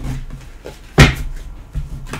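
Tarot cards being handled and shuffled by hand, with one sharp knock on the table about a second in.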